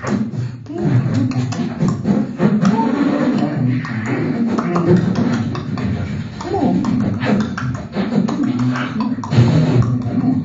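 Improvised non-verbal vocal performance at close microphones: a continuous stream of mouth clicks, pops and pitched hums and growls, partly shaped by hands cupped over the mouth.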